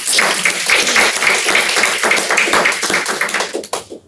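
Small audience applauding: many hands clapping in a dense, uneven patter that thins out and stops shortly before the end.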